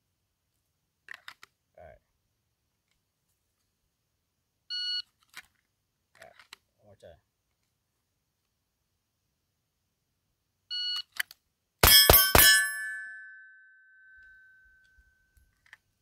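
A shot timer beeps twice. About a second after the second beep, a Smith & Wesson M&P 2.0 Metal pistol fitted with a DPM recoil spring and guide rod fires three quick shots. A steel target rings on after them with one long, fading ring.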